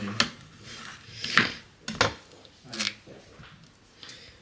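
A kitchen knife slicing through peaches and knocking on a plastic cutting board: about four short, sharp knocks at uneven intervals.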